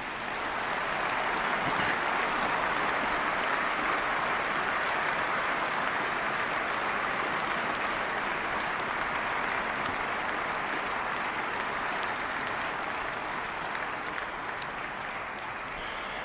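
Large audience applauding steadily. The applause builds over the first couple of seconds and eases off slightly near the end.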